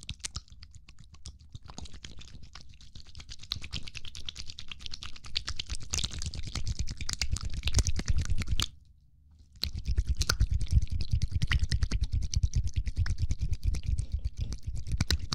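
Dense, rapid clicking and scratching close to the microphone, growing louder. It breaks off for about a second midway, then resumes.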